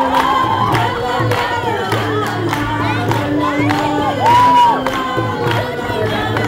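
Live acoustic band playing, with fiddle, acoustic guitars and a two-headed hand drum keeping a steady beat, while a crowd shouts and cheers over the music. A loud held whoop stands out about four seconds in.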